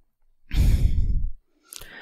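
A woman's sigh or breath out into a close microphone, just under a second long and breathy with a deep rush of air on the mic.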